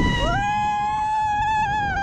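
Two high, drawn-out vocal cries overlapping. The first fades out about halfway through, and the second slides up in pitch and is held with a slight waver.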